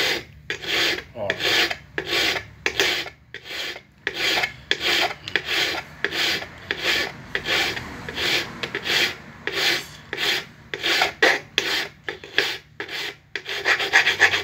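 Flat steel hand file rasping against the inner cutting edge of a small steel nipper, in short, regular strokes about two a second. It is the sharpening of the nipper's inner blade.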